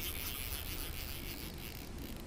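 A steady, high-pitched chorus of insects, with a low rumble on the chest camera's microphone underneath.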